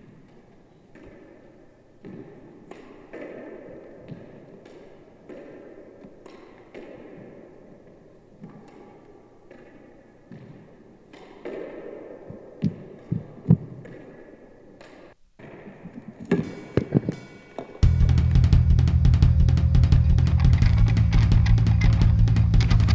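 Electric guitar played through an Orange amplifier: quiet picked notes, each ringing out, for about sixteen seconds, then loud distorted chords come in about eighteen seconds in.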